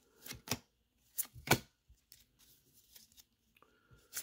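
Baseball trading cards being slid one at a time off a hand-held stack: four short flicks of card stock in the first second and a half.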